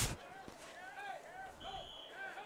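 Faint distant shouted voices from the field and stands, in short repeated calls, with a short faint high steady tone near the end.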